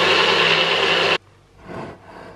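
Nutribullet blender running at full speed, blending a protein shake of almond milk and protein powder, then cutting off abruptly about a second in.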